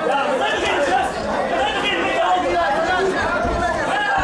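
Several voices of ringside spectators and cornermen talking and calling out over one another, a steady babble of chatter.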